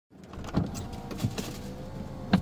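Iveco engine idling, heard from inside the cabin as a steady low hum, with a few irregular knocks and clicks over it.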